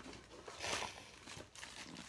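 Light rustling and crinkling of packaging being handled as a small box is opened and a wrapped item is taken out, loudest about three quarters of a second in.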